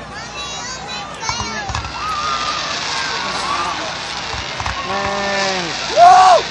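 Fireworks going off with a continuous crackling hiss, under voices shouting and whooping. Near the end a man gives a long whoop that falls in pitch.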